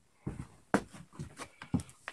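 A quick uneven series of light knocks and clicks from handling and moving the camera, the sharpest a little under a second in.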